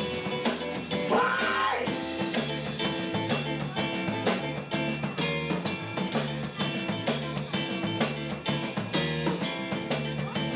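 Live funk-blues trio playing an instrumental passage: electric guitar, electric bass and drum kit over a steady beat. About a second in, a note slides up in pitch.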